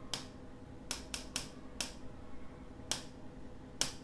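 A stylus tapping an interactive whiteboard's screen: about seven short, sharp taps spaced unevenly while an on-screen timer is set and started.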